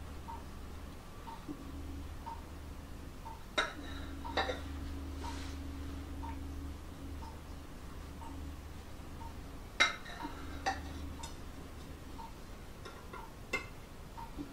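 A large kitchen knife clinking against a ceramic plate a few times as a cake is sliced, in sharp short clinks, the loudest about ten seconds in, over a steady low hum.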